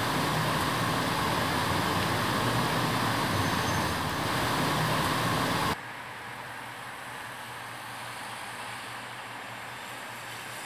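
Steady outdoor street noise with a traffic hum. It cuts off sharply a little past halfway, leaving a quieter, steady hiss.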